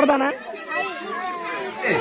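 Several children's voices talking and calling out over one another, in a busy crowd.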